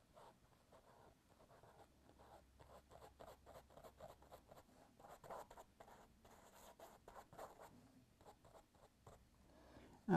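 Faint scratchy strokes of a small paintbrush working paint onto the mural surface, a few short strokes a second.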